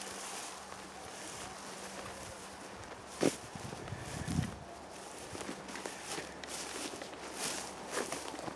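Footsteps through heather and long grass, with irregular rustling of the stems and one sharp thump about three seconds in.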